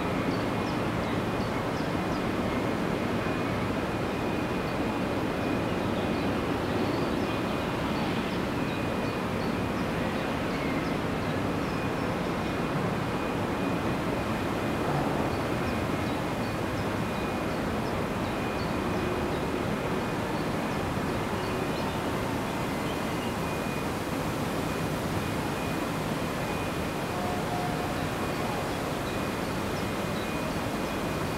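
Steady machinery noise from a distant heavy-industry plant: a continuous, even din with a thin, steady high whine and a low hum running through it.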